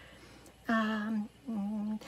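A woman humming two short, level 'mm' notes, each about half a second long, the second slightly lower and softer.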